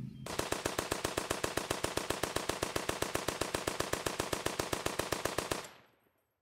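A long burst of rapid automatic gunfire, about nine shots a second, fading out near the end.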